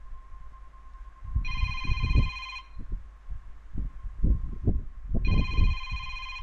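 A phone ringing: two rings, each about a second long and about four seconds apart, with low knocks of the phone being handled.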